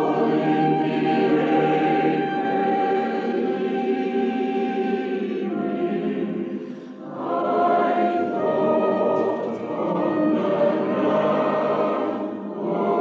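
A choral society choir singing held chords. One phrase ends about seven seconds in and the next begins.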